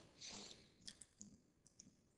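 Near silence with a few faint, short clicks from about one second in, from a computer mouse button being clicked.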